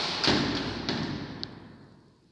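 A lift's swing landing door shutting with a thud, then the noise dying away over about a second and a half, with a short high click near the end.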